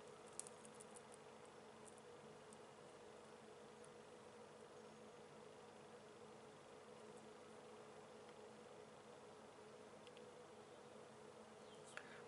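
Near silence: a faint steady background hum of room tone, with a few faint light ticks in the first second or so.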